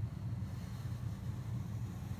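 A steady low rumbling hum, with a faint hiss coming in about half a second in.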